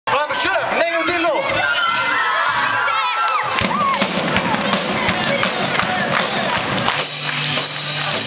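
A crowd of children cheering and shouting, with clapping, and then a rock band's electric guitars, bass and drums start playing about seven seconds in.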